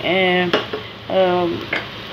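Sliced onions frying in oil in a pan and being stirred with a spoon, with a sharp tap about halfway through. A voice sounds two long drawn-out syllables over the frying.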